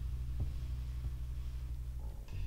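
A low, steady throbbing hum.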